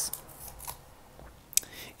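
Small piece of cardstock being handled and folded between the fingers: a faint rustle with two light clicks, the sharper one near the end.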